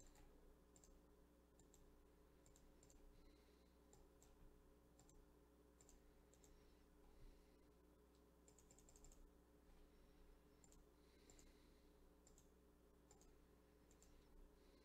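Near silence broken by faint clicks of a computer mouse and keyboard, scattered and often in pairs, with a quick run of clicks about two thirds of the way through, over a low steady electrical hum.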